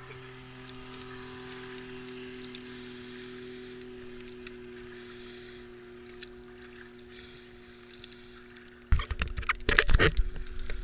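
Water swishing around a racing kayak, with a powerboat's engine droning steadily in the distance, its pitch sinking slowly. About nine seconds in comes a sudden loud burst of splashing and buffeting on the camera.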